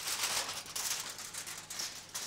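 Aluminium foil crinkling and crackling as it is peeled off a roasting tin.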